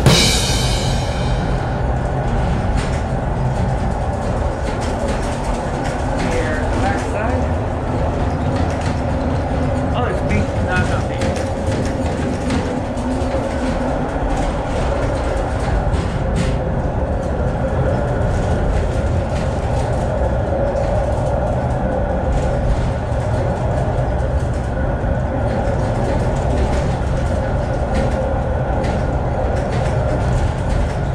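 The rail-guided car of the Ascensore Castello d'Albertis-Montegalletto running along its track through a tunnel, heard from inside the car: a steady rumble of the car on its rails with a faint steady hum over it.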